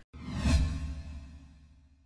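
Whoosh sound effect over a low rumble, swelling to its loudest about half a second in and then fading away over the next second and a half.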